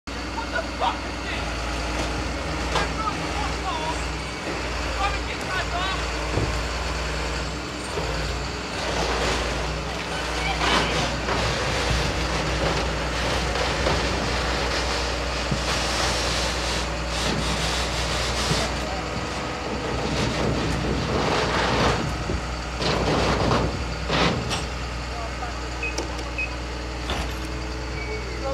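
Heavy diesel lorry engine idling steadily, with several loud bursts of hiss over it. Voices can be heard in the background.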